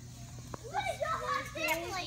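A child's high-pitched voice talking excitedly, starting about half a second in, over a steady low hum. A single light click comes just before the voice.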